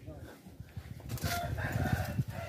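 A rooster crowing once: one long call starting a little over a second in. Underneath it is the rustling of a phone being handled and moved.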